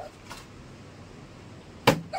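A small plastic water bottle is flipped onto a cloth-covered table, with a faint tap about a third of a second in and one sharp knock near the end as it lands or falls.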